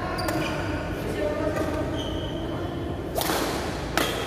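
Badminton rally: sharp smacks of rackets striking a shuttlecock, with a loud swish just after three seconds in and a crisp hit at the very end, over background voices in the hall.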